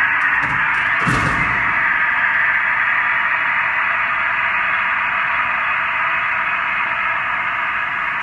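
A steady, loud hiss switches on abruptly as the Airbus A330 door trainer's emergency exit door is opened, the trainer's simulated sound of the escape slide inflating. There are two knocks in the first second and a half as the door swings up.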